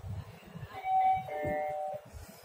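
Sigma traction elevator's arrival chime: a two-note ding-dong, a higher tone followed by a lower one, sounding about a second in. It signals that the car has reached its floor and the doors are about to open.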